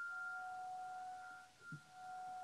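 Grand piano notes ringing on softly after being struck, held as a steady pair of tones in a quiet passage; a faint low note sounds near the end.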